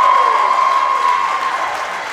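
Audience cheering and applauding, with one long high yell over the crowd that fades out about a second in.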